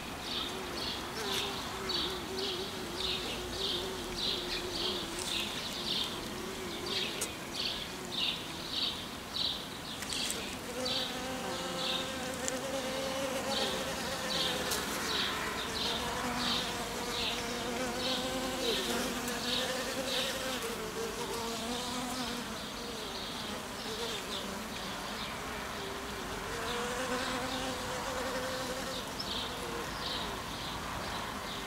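A cluster of honeybees buzzing close up, a wavering hum that shifts in pitch and grows fuller about a third of the way in. Over it runs a high chirp repeating about two to three times a second.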